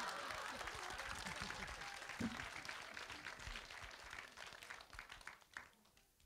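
Theatre audience applauding, strongest at the start and fading out over about five seconds.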